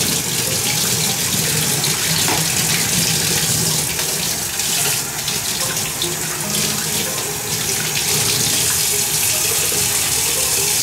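Faucet water running steadily into a plastic utility sink, splashing over a protein skimmer cup whose neck is being scrubbed out by hand with a sponge.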